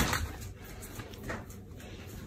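A short knock, then the faint, irregular clicking of a golden retriever's claws on a tiled floor as it trots away.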